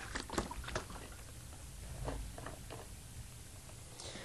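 A plastic gallon jug of lane oil being handled and shaken before pouring: faint light knocks and clatter, a cluster in the first second and a few more around two seconds in.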